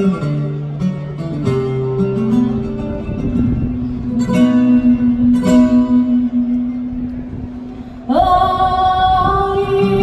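Flamenco guitar playing plucked phrases, then about eight seconds in a woman's flamenco singing voice enters, sliding up into one long held note over the guitar.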